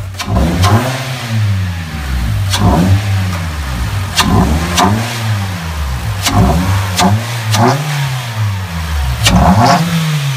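Mitsubishi Lancer's four-cylinder MIVEC engine, fitted with an aftermarket cold air intake and cat-back exhaust, blipped from idle about six times, roughly every one to two seconds, each rev rising and dropping back quickly.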